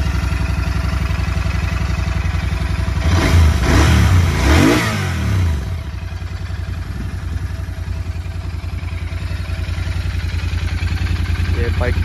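Royal Enfield Continental GT 650's parallel-twin engine idling just after a cold start. About three to six seconds in, its note rises and falls with a couple of throttle blips, then it settles back to a steady idle.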